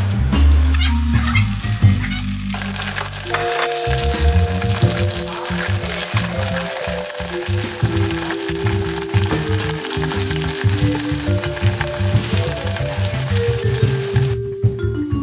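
Dried bánh ram rice-paper sheets deep-frying in hot oil in a stainless steel pot, sizzling steadily as they puff up. The sizzle grows much louder about two and a half seconds in.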